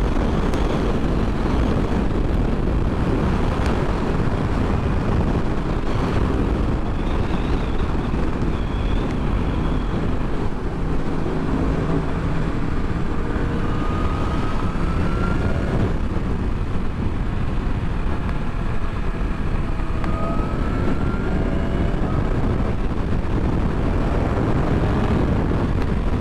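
Wind rushing over the microphone with road and engine noise from a BMW S1000RR sportbike's inline-four cruising at freeway speed, steady throughout. A faint rising tone comes through about halfway in and again later.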